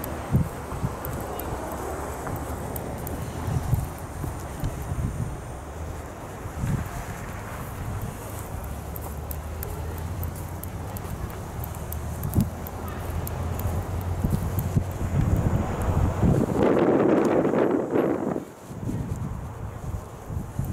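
Footsteps crunching on packed snow while walking, over a steady low rumble of wind and handling on the microphone, with a louder swell of noise for a couple of seconds near the end.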